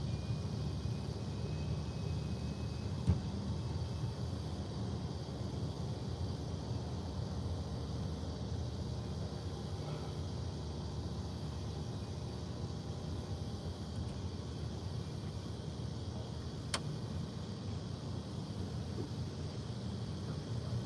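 Steady low rumble of outdoor background noise with no voices, broken by a soft knock about three seconds in and a single sharp click near the end.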